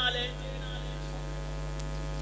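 Steady electrical mains hum carried through the microphone and sound system, with a low buzz and no other sound.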